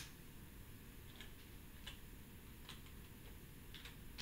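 A few faint, irregularly spaced computer keyboard keystroke clicks over near-silent room tone.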